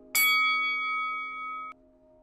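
A single bright, bell-like ding struck once as the channel's logo sting. It rings steadily for about a second and a half, then cuts off suddenly, over a faint sustained musical note.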